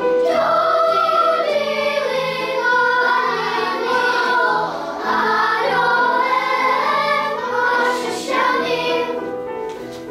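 Children's choir singing, the voices holding long notes, with a brief break in the singing just before the end.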